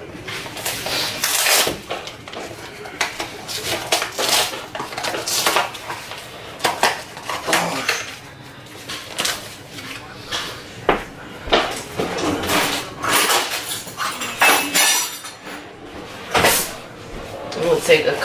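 Kitchen clatter of dishes and cutlery being handled on a counter: many short clinks and knocks at irregular intervals.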